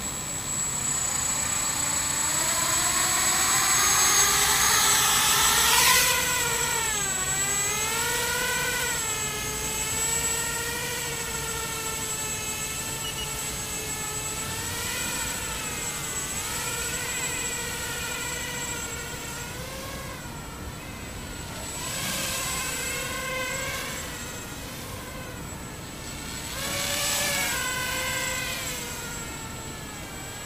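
Skyartec Butterfly quadcopter's four brushless motors and propellers whining, the pitch rising over the first few seconds as it spins up and lifts off, then wavering up and down as the throttle is worked in flight. The sound swells twice near the end.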